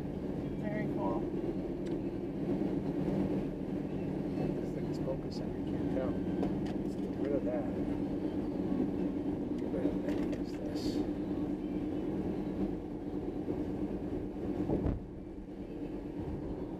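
Steady engine and tyre drone heard inside the cabin of a car driving at road speed, with faint voices now and then. The drone dips briefly near the end.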